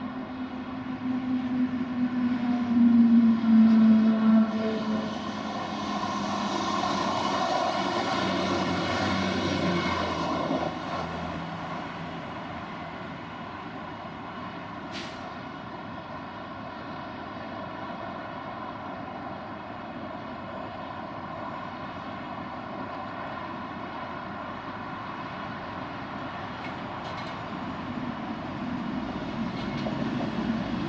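A Class 158 diesel multiple unit running past, its engine note dropping in pitch as it goes by in the first few seconds, followed by the rush of its carriages passing. Then a DB Class 66 diesel locomotive hauling box wagons approaches with a steady engine drone.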